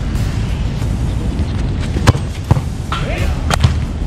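A football struck hard off grass in a goalkeeper's kick: one sharp thump about two seconds in, followed by a couple of lighter knocks, over a steady low rumble.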